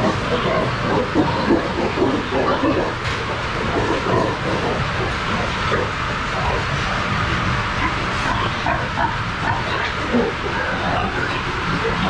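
Pen of pigs grunting over a steady background rumble.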